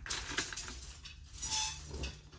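Brief rustling and light clinks of things being handled as a person moves about, in two short bursts, one at the start and one about one and a half seconds in.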